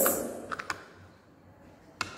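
Two light clicks about half a second in, a hand touching the smooth pebbles in a bowl; otherwise quiet room tone.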